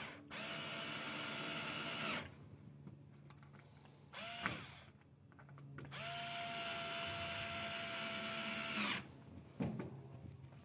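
Small cordless screwdriver driving screws into a wooden handle: a steady motor whine for about two seconds, a brief trigger blip, then a second run of about three seconds.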